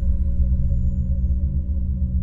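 Ambient meditation soundscape: a deep, steady low drone with a fast pulsing throb, under fainter sustained higher tones. A faint high whistle slides downward in the first second.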